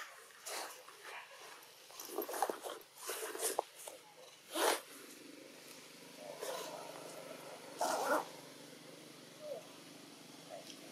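A series of short animal calls in irregular bursts, a handful over several seconds, the loudest about two to five seconds in, over a faint steady background.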